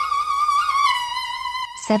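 Background music: a bowed fiddle holding one high note with vibrato, sliding down a little about a second in.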